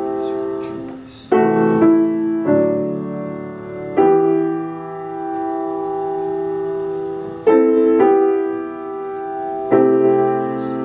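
Grand piano playing the accompaniment to a responsorial psalm, slow chords struck at an unhurried pace and each left to ring and fade before the next.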